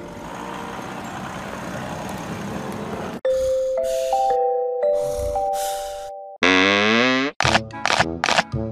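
Edited soundtrack of music and cartoon sound effects. A rush of noise swells for about three seconds and cuts off. Then a short tune of held, chime-like notes plays over breathy snore-like puffs, and a loud buzzy tone sounds near the end.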